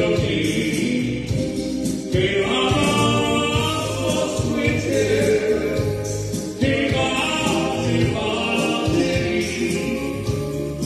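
Live band music, amplified: a male voice on a microphone with saxophone over electronic keyboard, playing continuously.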